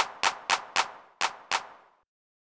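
Hand clap drum sample in FL Studio repeating about four times a second while panned off to the right, with the circular pan law on to hold its level steady as it pans. The claps stop about three quarters of the way through.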